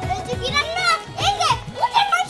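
Lively voices, a child's among them, over background music.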